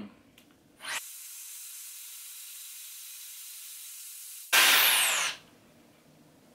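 Shark FlexStyle air styler blowing air through its curling wand: a steady hiss, then a short, much louder blast about four and a half seconds in that ends with a falling whine.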